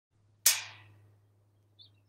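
A sudden hissing burst about half a second in, the loudest sound, fading away within about a second, over a steady low hum; a single short bird chirp comes near the end.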